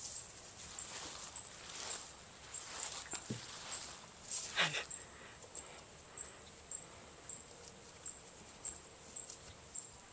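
Quiet outdoor ambience dominated by an insect chirping in the grass, a steady high tone pulsing about twice a second. A brief faint vocal sound comes about halfway through.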